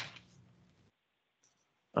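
A sharp knock right at the start that fades into faint room hiss. The hiss then cuts out to near silence about a second in, and a voice begins 'Um' at the very end.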